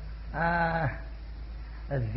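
A man's voice holding one drawn-out, level-pitched syllable for about half a second, then a pause, over the steady low hum of an old tape recording.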